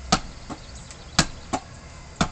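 A large ball smacking against bare hands as it is batted straight up overhead: two sharp slaps about a second apart, each followed by a fainter tap.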